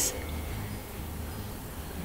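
Quiet room tone with a faint steady low hum, after a woman's voice trails off at the very start.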